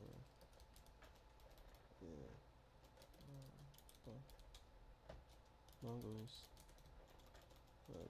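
Faint typing on a computer keyboard: short runs of keystrokes with pauses between them.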